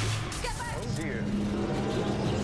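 TV drama soundtrack at low level: a few faint words of dialogue, then a steady low drone from the score or ambience that sets in about halfway through.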